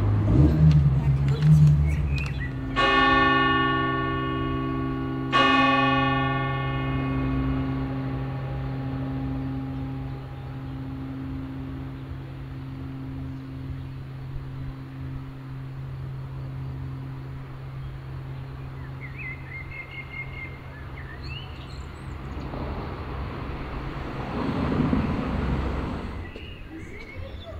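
Church tower bell struck twice, a couple of seconds apart, each stroke ringing on and slowly dying away over about fifteen seconds, with a steady low hum beneath.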